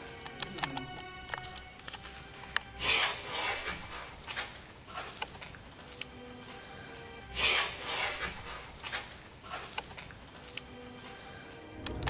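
A breathy, rasping whisper-like sound, heard twice about five seconds apart over faint eerie music. It is presented as a psychophony: a disembodied voice on the recording saying 'entra' ('come in').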